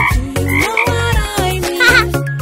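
Upbeat children's song: a sung melody over a steady bass line, with cartoon frog-croak sound effects mixed in.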